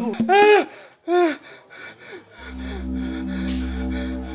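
Two short vocal cries, each rising then falling in pitch, the first louder and longer. A little past halfway a low droning music bed with a steady deep bass note comes in.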